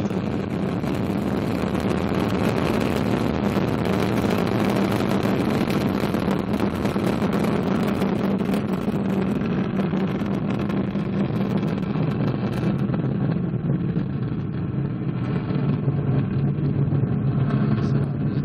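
Ariane 5 rocket at liftoff: the loud, continuous rumble and crackle of its two solid rocket boosters and Vulcain 2 main engine. About thirteen seconds in the crackle loses its top end and the sound grows duller.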